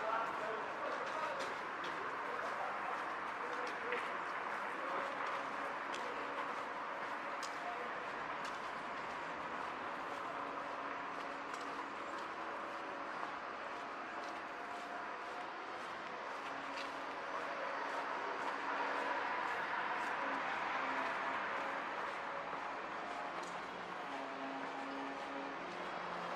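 Quiet town-centre street ambience: a steady hiss of background noise with faint, indistinct voices and a few scattered clicks.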